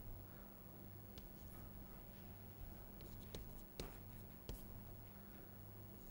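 Chalk writing on a blackboard: faint scratching with a few sharp ticks as the chalk strikes the board, over a steady low hum.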